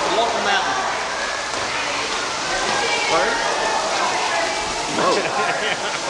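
Children and adults chattering, with no single voice clear, over a steady rushing hiss.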